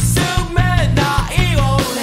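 Emotional hardcore band recording: loud guitar-driven rock over bass and drums, with pitched notes bending down in pitch.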